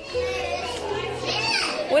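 Young children's voices over background music with long held notes; a voice rises near the end.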